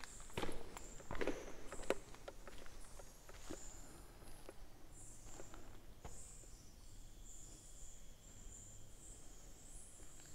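Footsteps scuffing and crunching on a gritty cave floor, several quick steps in the first two seconds, then a few softer, slower ones. Faint high-pitched chirping runs behind them.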